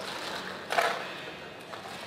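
Clay casino chips clattering and clicking against each other as the croupier gathers and stacks chips on the roulette layout. There is one louder clatter a little under a second in.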